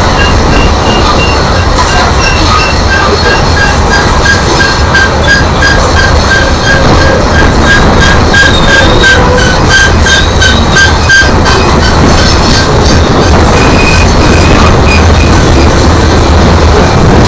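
Coal hopper cars of a Union Pacific coal train rolling past with a steady low rumble of wheels on rail, while a grade-crossing signal bell rings in an even rapid beat of about three strokes a second.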